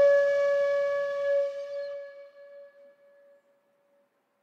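Instrumental music ending on one long held note that fades away to silence over about three and a half seconds.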